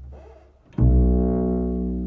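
Solo double bass played pizzicato. A low plucked note fades almost away, then about three-quarters of a second in a new low note is plucked sharply and rings on, slowly dying.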